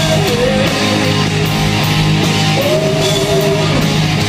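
Live rock band playing: a male lead vocal sings long held notes over electric guitar and drums, with the longest note starting about two and a half seconds in.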